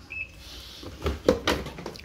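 Panasonic NP-TR6 dishwasher's control panel gives one short high beep as the machine is switched off. About a second in, its front door is pulled open with a few sharp clunks and clicks.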